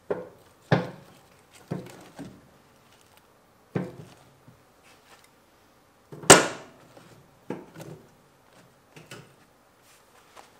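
Split firewood pieces of post oak, red oak and pecan being set down one after another on a bed of coals in a wood stove's firebox: a string of wooden knocks and scrapes, the loudest a sharp clunk about six seconds in.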